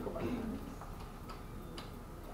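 Light, sharp ticks roughly every half second over room tone, with the tail of a voice fading out in the first half second.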